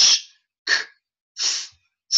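A man sounding out voiceless hissing consonants such as 'sh' and 's', three short high-pitched hisses in a row, about three-quarters of a second apart.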